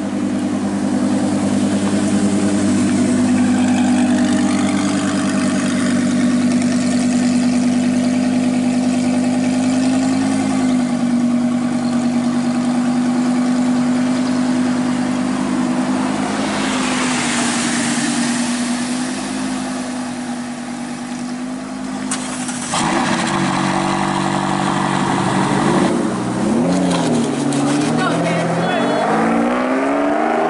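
Audi R8's V10 engine idling steadily as the car crawls along. About 23 seconds in, an engine is revved up and down a few times, then a car accelerates hard, its pitch rising near the end.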